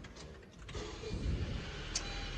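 A 2019 Honda CR-V's 1.5-litre four-cylinder engine started by push button. After a click it catches a little under a second in and settles into a low, steady idle, with a short high tick near the end.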